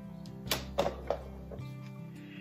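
Soft background music with sustained tones, and three light clicks or knocks from hands handling metal telescope parts, about half a second to a second in.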